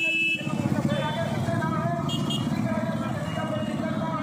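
Several motorcycles riding together at low speed, their engines running in a dense, steady low chorus. A horn holding one steady note cuts off just after the start.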